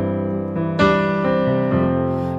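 Digital keyboard with a piano sound playing a slow pop-ballad accompaniment in sustained chords; a new chord is struck just under a second in and the bass note changes near the end.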